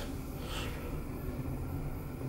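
Mitsubishi machine-room-less traction elevator car riding up one floor, heard from inside the car as a steady low hum.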